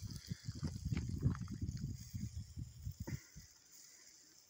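Footsteps crunching on dry gravel and twigs, with rustling as the phone is carried, for about three seconds, then stopping.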